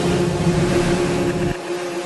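Tail end of an electronic track: a dense, steady distorted noise drone with a faint held tone under it. The bass drops out about one and a half seconds in.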